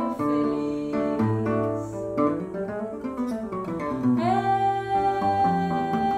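Seven-string nylon-string guitar (violão de sete cordas) playing a samba accompaniment, with moving bass notes under plucked chords. About four seconds in, a woman's voice enters on one long held note that slides up into pitch.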